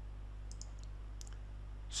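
A few faint computer clicks, in two small clusters about half a second and a second and a quarter in, over a steady low electrical hum.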